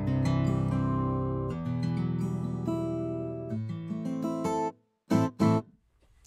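Sampled acoustic guitar (Kontakt 'Picked Acoustic' patch) playing a picked chord pattern, bone dry with no reverb, cutting off abruptly with no tail a little under five seconds in. A short loud sound follows just after.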